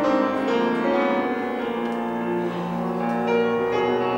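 Solo grand piano being played: a stream of notes over held chords, with many notes struck in quick succession.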